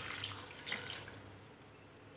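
Milk poured from a steel tumbler into a blender jar onto banana pieces and dates, a splashing pour that tapers off over about a second and a half.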